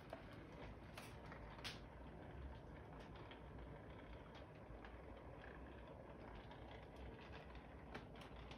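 Toy train running faintly on its track: a low steady rumble with a few light clicks.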